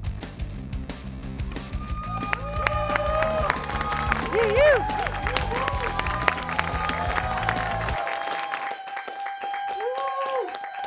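Game-show theme music with a steady beat and voices over it; the beat stops about eight seconds in, leaving a held note and the voices.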